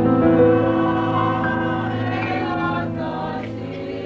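A choir singing slowly, several voices holding long notes together and moving between them in harmony.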